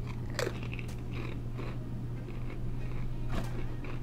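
A Pringles potato chip bitten with a sharp crunch about half a second in, then chewed with several more crunches at close range. A steady low hum runs underneath.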